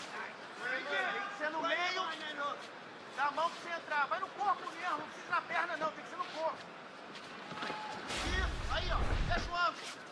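Voices talking over the background noise of an arena crowd, with a short deep rumble about eight seconds in.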